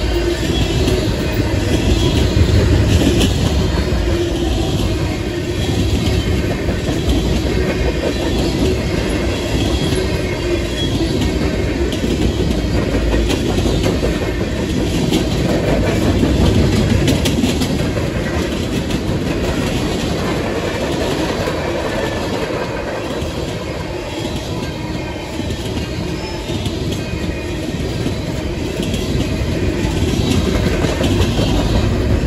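Freight train of tank cars rolling past close by: steel wheels running on the rails in a steady, continuous noise that swells and eases slightly.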